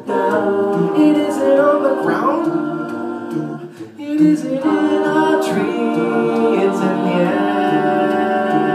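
Mixed a cappella group of six voices singing held close-harmony chords through microphones, with a sliding vocal glide about two seconds in. The sound thins and dips near the middle, then the full chord comes back in and holds.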